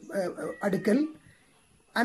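A man speaking in a lecturing voice for about a second, then a pause of near silence until he starts again.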